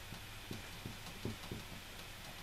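Dry-erase marker writing on a whiteboard: a loose series of faint short taps and scratches as the strokes of the words go down, over a steady low room hum.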